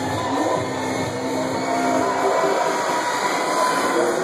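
Loud club dance music from a DJ's sound system in a stretch without the bass beat: a rushing noise over held tones, with the deep bass thinning out toward the end.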